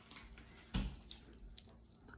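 A plastic food container is handled on a glass cooktop, giving one short soft knock about three-quarters of a second in, over quiet room tone.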